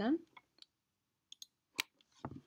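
A few sparse clicks of a computer mouse, placing a text cursor in a design program, with the last and loudest near the end.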